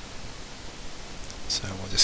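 Steady hiss of a recording's background noise, with a man's voice starting near the end.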